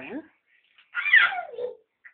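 A young child's high-pitched squeal, a little under a second long, falling steeply in pitch, about a second in.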